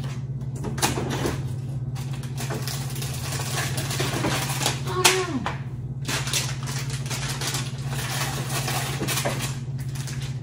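Scattered clicks, knocks and rustles of jars and packages being moved about in an open refrigerator, with one sharper knock about five seconds in, over a steady low hum.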